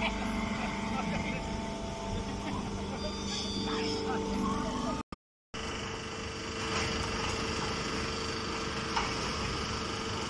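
Steady drone of farm machinery running, with a fixed humming tone. About halfway through it cuts out for half a second, and a similar steady machine hum then carries on.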